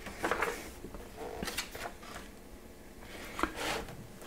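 A page of a large bound book being turned by hand, paper rustling and sliding in a few short strokes.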